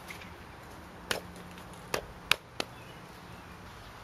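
Concrete landscape edging blocks being set in place, knocking against one another: four sharp clacks over about a second and a half, the third the loudest.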